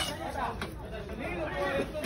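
Several people talking and chattering at once, with a single sharp knock right at the start.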